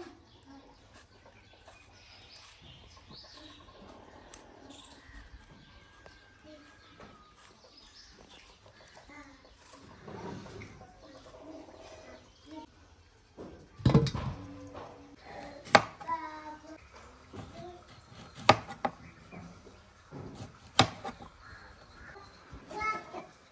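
Faint background of birds chirping and distant voices, then from about two-thirds of the way in, four or five sharp knocks of a knife striking a plastic cutting board as peeled apples are cut.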